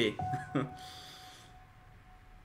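A single soft piano note held and slowly fading, part of quiet, slow background music, with a brief voice sound at the start.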